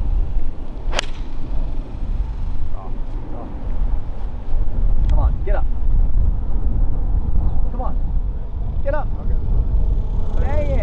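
Golf iron striking the ball once, a sharp crack about a second in, on a low punched stinger shot that was caught off the toe of the clubface. A steady low rumble of wind on the microphone runs underneath.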